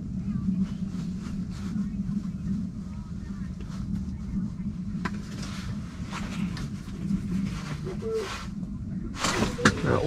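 Indistinct, low muffled voices over a steady low hum, with a few clicks and rustles of handling. A louder burst of rustling and clicks comes near the end.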